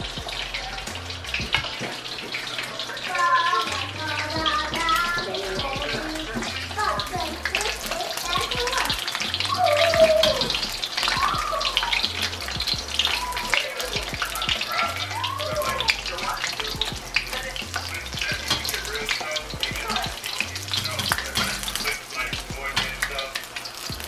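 Dumplings frying in hot oil in a wok, a continuous sizzle full of small crackles, under background music with a steady bass beat.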